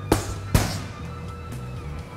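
Two jabs from boxing gloves smacking into focus mitts, about half a second apart, over background music.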